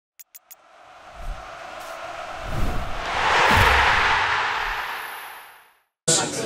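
Logo ident sound effect: three quick ticks, then a whoosh that swells up over about three seconds, with low thuds at its height, and fades away.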